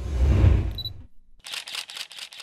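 Logo sting sound effect: a low, rumbling whoosh with a short high beep near its end, then, after a brief gap, a rapid burst of camera shutter clicks.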